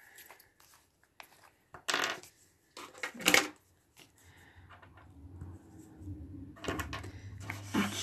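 Hands handling a small glue bottle and a thread-wrapped pompom button: two short rustling bursts about two and three seconds in, then faint rubbing and a few light clicks near the end.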